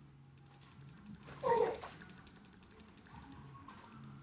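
A single short animal call, about half a second long, about a second and a half in, over a faint steady ticking.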